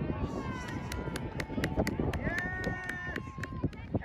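Voices shouting across a softball field, with one long held call a little past the middle, over many sharp clicks.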